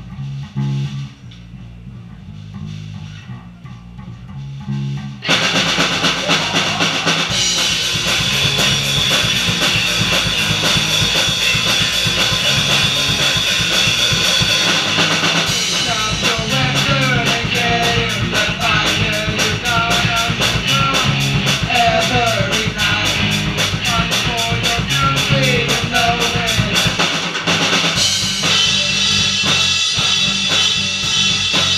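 Live rock band of electric guitar, bass guitar and drum kit playing. A low bass riff plays alone at first, and the drums and guitar crash in about five seconds in. From about halfway through, a melody line bends over the full band.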